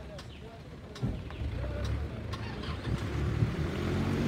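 A motor vehicle engine running close by, its low hum growing steadily louder, with a few sharp clicks over it.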